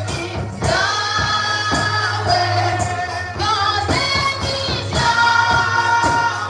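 Gospel praise music: a woman sings long held notes into a microphone over an accompaniment with a bass line and a steady beat.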